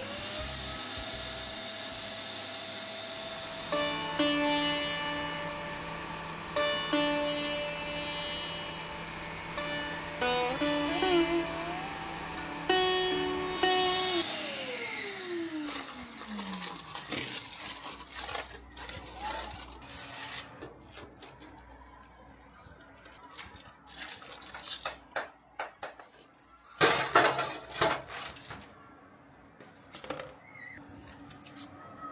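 Background music of held notes for the first half, ending in one long falling tone. Then a run of knocks, cracks and crunching as a sand and sodium-silicate casting mold is broken apart by hand, with the loudest burst of crunching near the end.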